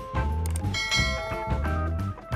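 Background music with a steady low beat, with a bright bell-like chime ringing out about three-quarters of a second in and fading away: a notification-bell sound effect.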